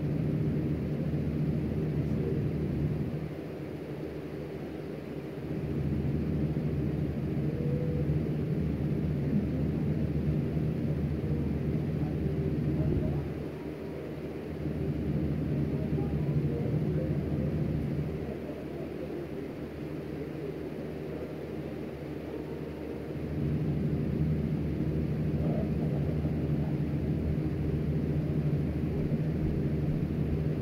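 A steady low mechanical hum, like a motor running, that drops quieter three times for a few seconds before coming back up.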